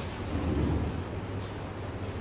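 Chalk scratching on a blackboard as words are written, over a steady low room hum.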